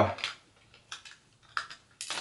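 A few light, separate clicks and clinks of small metal hand tools being picked up and handled: the mini Phillips screwdrivers about to be used on the RAM clips.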